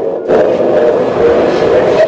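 Indistinct voices with no clear words, loud and continuous over a background din.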